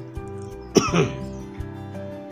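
Soft background music with steady held tones, and a person's short cough about three quarters of a second in.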